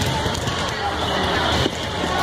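Volleyball impacts echoing in a gym hall, over a steady din of spectators' voices. The sharpest knock comes near the end.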